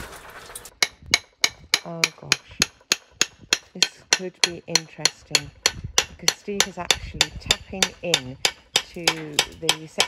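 Hammer blows on a block of Majella stone, struck steadily at about three to four a second, starting about a second in. The stone is being split along slots cut into it with an angle grinder.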